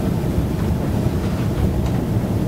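Steady low rumble of room background noise, with no voices, and a faint click near the end.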